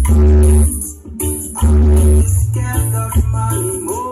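Loud dance music played through a large loudspeaker stack, with heavy bass and shaker-like percussion. It drops away briefly about a second in, then comes back at full level.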